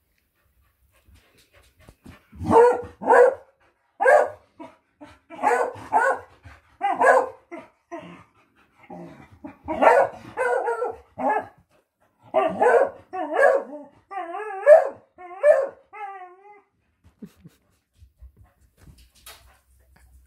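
A dog barking repeatedly in short runs of two or three barks, ending in a few longer calls that waver up and down in pitch, then stopping.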